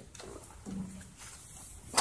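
Quiet hall room tone with one short word from a man's voice, ending on a sharp clack at the very end.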